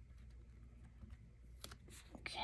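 Near silence: room tone with a low hum, and a few faint clicks near the end as paper stickers are handled and peeled.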